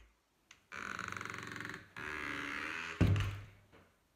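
A person's voice making two drawn-out, pitched vocal noises, the first with a fluttering buzz, then a louder low, short sound about three seconds in that fades away.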